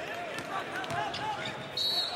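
Basketball game sound effect: a ball bouncing on a court amid many short squeaks and a background murmur of voices, with a brief high steady tone coming in near the end.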